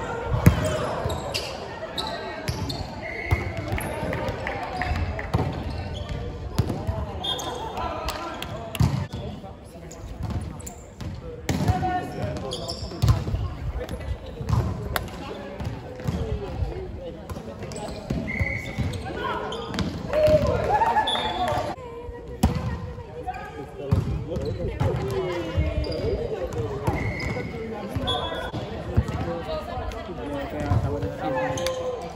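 Indoor volleyball rally in a sports hall: the ball is struck and thuds repeatedly, sneakers squeak briefly on the wooden court, and players call out, all echoing in the hall.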